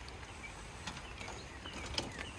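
Steady light rain hiss, with a couple of faint clicks.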